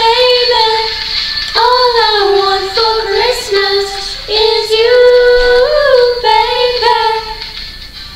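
A female voice sings a pop song over backing music, holding long notes that bend in pitch. It fades toward the end.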